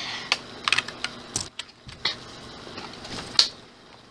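A run of irregular light clicks and taps from objects being handled, with a sharper click about three and a half seconds in.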